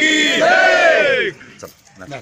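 A group of men shouting a slogan together in one long, drawn-out cry that falls away and stops about a second and a half in.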